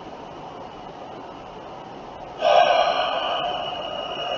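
Faint steady hiss, then about halfway through a man's loud, breathy gasp close to the microphone, trailing off over about a second and a half.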